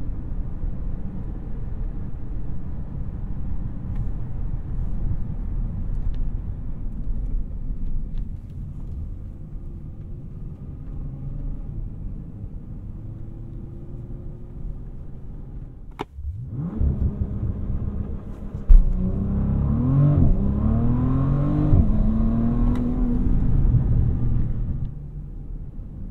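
Bentley Flying Spur Speed's twin-turbocharged 6.0-litre W12, heard from inside the cabin, cruising with a steady low rumble, then accelerating hard about two-thirds in. The acceleration opens with a sudden loud thump, and the engine note rises in pitch in several steps, as the automatic shifts up, before easing off near the end.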